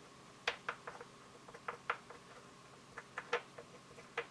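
A dozen or so faint, irregular clicks and taps as fingertips and fingernails dab and press embellishment mousse onto a small molded clay piece on a craft sheet.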